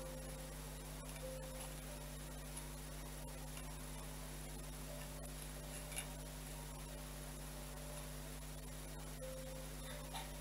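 Steady low electrical mains hum with a thin high whine, with faint small clicks of hands handling craft materials; one sharper click about six seconds in.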